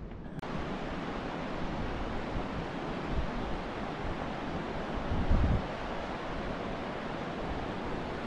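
Fast mountain river rushing over stones, a steady, even hiss of water that sets in abruptly about half a second in. A brief low buffet of wind on the microphone comes a little after five seconds.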